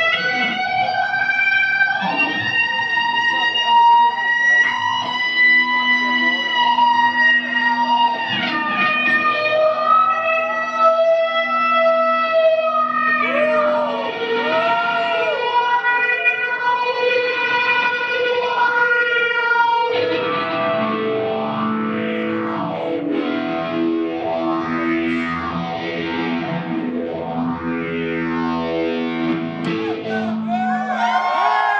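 Electric guitar played with a violin bow through effects: long held notes that slide between pitches. About two-thirds of the way through they turn into a denser swirl of overlapping, sweeping tones.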